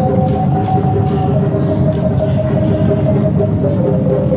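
Live silat accompaniment of traditional drums and a serunai (Malay oboe) playing a held melody that steps to a new pitch about a second in, over steady drumming.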